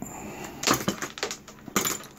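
Several sharp clicks and light metallic clinks from handling a multimeter and its test probes over a metal amplifier chassis.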